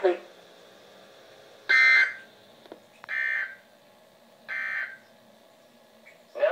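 Three short data bursts from a Midland weather alert radio's speaker: the NOAA Weather Radio SAME end-of-message code that closes a warning broadcast. Each burst lasts about half a second, they come about 1.4 s apart, and the first is the loudest.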